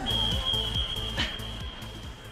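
Upbeat workout music with a steady beat, fading out, under one long high electronic beep. The beep is a Tabata interval timer signalling the end of the round.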